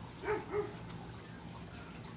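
A dog barks twice in quick succession: two short barks about a third of a second apart.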